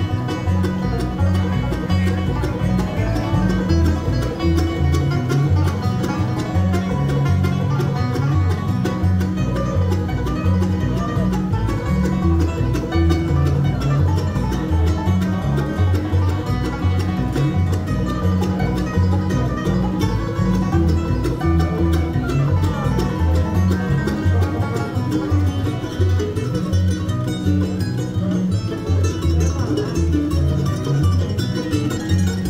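Live bluegrass band playing a fast instrumental led by banjo, with acoustic guitar, mandolin and upright bass behind it; the bass gives a steady pulse of low notes.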